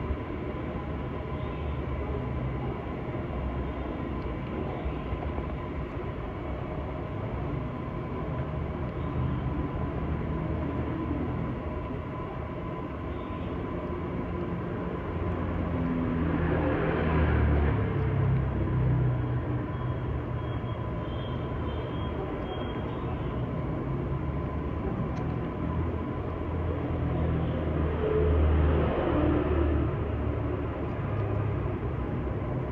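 Steady low rumbling background noise with a faint, constant high tone, swelling louder about halfway through and again near the end.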